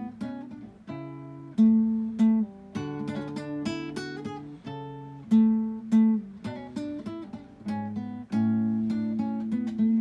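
Solo acoustic guitar playing a piece of plucked notes that strike and fade, several sounding together over held bass notes.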